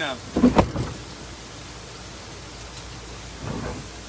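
A canoe hull knocking and scraping on rocks as it is set down, one loud knock about half a second in and a fainter bump later. Steady rushing water runs underneath.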